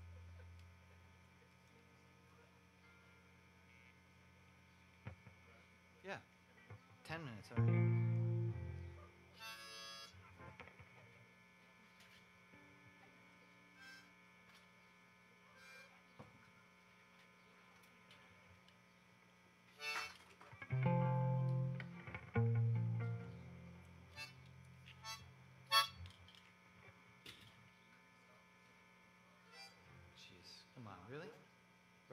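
Amplified guitar rig hum with sparse handling sounds as a metal harmonica holder is fitted between songs: scattered clicks and short metallic rattles, and a few brief low notes about 8 seconds in and twice around 21 to 23 seconds in.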